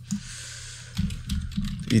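Computer keyboard being typed on, a loose run of light key clicks.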